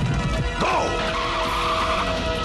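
Dramatic film score over a vehicle skidding: a squealing glide about half a second in, then a steady skid noise.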